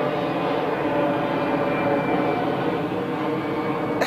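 Airplane flying overhead, a steady drone.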